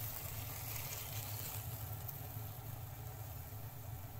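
Low, steady hum and hiss of a kitchen, with faint sizzling from stir-fried bamboo shoots as they are tipped from a hot frying pan into a ceramic bowl.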